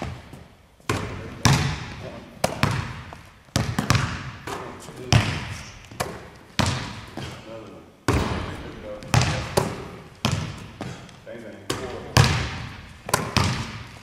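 Basketball bouncing on a hardwood gym floor, sharp bounces about once or twice a second, each ringing out in the hall's echo.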